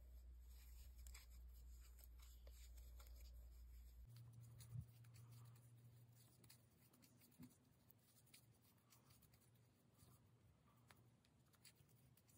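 Near silence: a steady low room hum, with faint scratching and light ticks of a metal crochet hook working acrylic yarn, and one soft tap about five seconds in.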